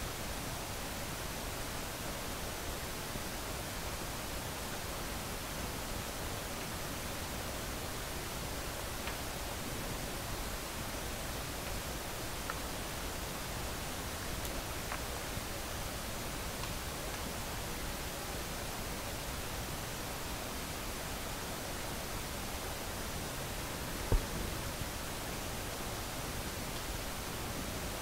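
Steady hiss of background noise, with a single soft knock near the end.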